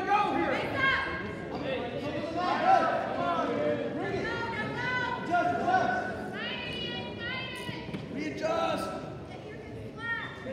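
Several voices shouting and calling out to wrestlers during a bout, overlapping one another. There are bursts of higher-pitched yelling about six to nine seconds in.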